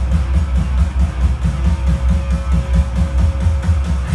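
A rock song with electric guitar and drums, played loud through Sony Shake 7 and Shake 77 hi-fi speaker systems, heavy in the bass with a pulsing low end. Right at the end the sound turns brighter and heavier.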